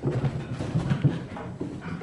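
Two small dogs scrambling down a carpeted staircase: a quick, irregular run of soft thumps from their paws.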